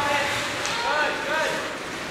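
Several voices shouting and calling out in an echoing indoor ice rink, short rising-and-falling calls over the hum of the arena, with a single sharp click about two-thirds of a second in.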